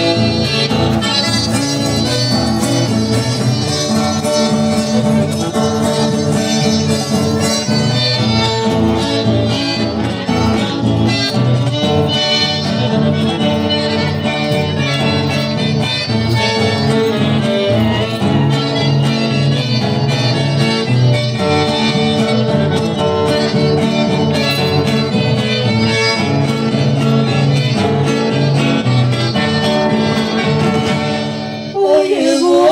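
Accordion and two acoustic guitars playing an instrumental passage of a song live, with no singing.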